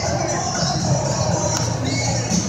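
Music playing over an arena's sound system, with the chatter of a large crowd in the stands underneath.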